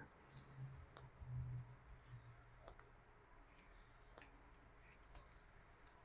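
Near silence with a handful of faint, irregular clicks as an oxygen concentrator's metal sieve bed canister is spun off its threaded fitting by hand.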